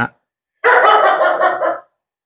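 Dogs barking, a loud burst of about a second starting about half a second in.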